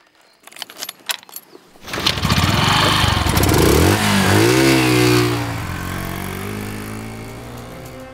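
A few small clicks at the motorcycle's ignition. Then, about two seconds in, the motorcycle engine starts loudly and is revved up and back down with the twist of the throttle. It settles into a steadier run that fades toward the end.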